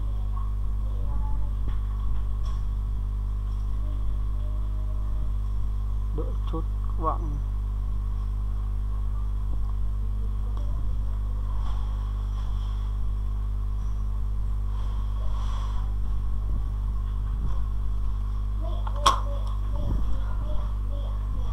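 Steady low electrical mains hum on the recording, with one sharp click about a second before the end.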